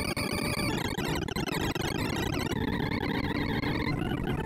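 Sorting-algorithm sonification from ArrayVisualizer as quick sort runs: a rapid, dense stream of short synthesized beeps whose pitches jump with the array values being compared and swapped. Held tones sound under the chatter at the start, drop out, and a new held tone comes in a little past halfway.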